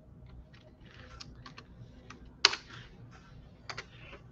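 Quiet, irregular computer keyboard keystrokes, with one louder key click about two and a half seconds in.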